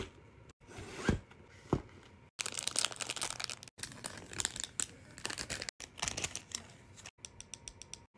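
Close-up handling of stationery packaging. Two soft taps come first, then crinkling and rustling of a card-and-plastic pack of binder clips and bookmarks, in short bursts with abrupt breaks. It ends in a run of quick, light ticks.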